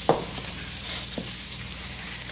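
Crackle and hiss of an old radio transcription recording between lines of dialogue, with a couple of sharp clicks.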